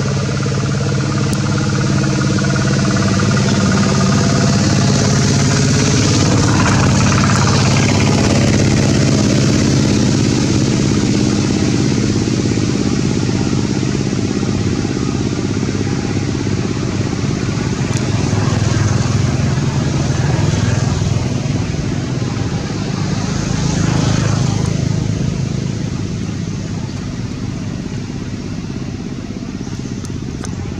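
A motor vehicle engine running steadily, swelling twice as traffic passes, then fading off gradually.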